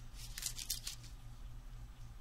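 Clear plastic die packages crackling and clicking as they are shuffled in the hands, a cluster of sharp crinkles in the first second, then quieter handling.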